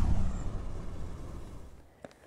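TV news 'LIVE' graphic transition sound effect: a low swoosh that fades out over about two seconds after a sudden hit.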